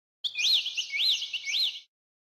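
A bird chirping: three quick, repeated whistled notes, each rising and falling in pitch, about half a second apart, starting and stopping abruptly.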